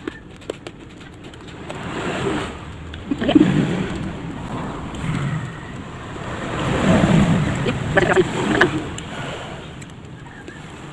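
Close-up chewing of a mouthful of uncooked rice grains: crunching in several loud spells, with a few sharp crunches near the end.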